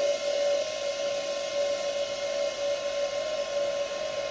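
Cocoon Create Model Maker 3D printer running: a steady pitched hum with a hiss above it.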